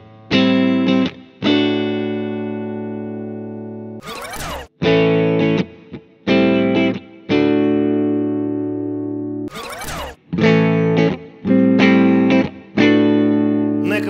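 Three Telecaster-type electric guitars played one after another on their neck pickups through a tube amplifier: a Fender Esquire Relic Custom Shop, a Fender Hot Rod '50s Telecaster, then a Squier Affinity Telecaster. Each plays the same short phrase of a few struck chords ending on a held chord that rings out and fades. A short burst of noise comes between one guitar's phrase and the next.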